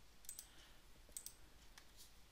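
A few faint computer mouse clicks against near-silent room tone.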